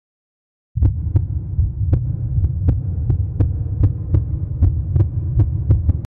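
A sudden loud, low throbbing drone with sharp beats about two to three times a second, starting about a second in and cutting off abruptly at the end: an added suspense sound effect in the manner of a pounding heartbeat.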